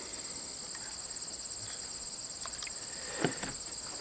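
Crickets chirring in a steady high chorus, with one light tap about three seconds in.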